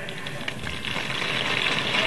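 A crowd applauding and cheering, swelling in level over the two seconds.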